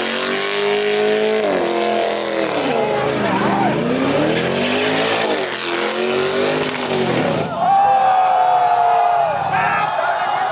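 Car engine revving hard, its pitch rising and falling again and again, over the noise of tires spinning and squealing on pavement as the car does donuts in its own tire smoke. About seven and a half seconds in, the tire hiss drops away suddenly and the engine holds a steadier high note.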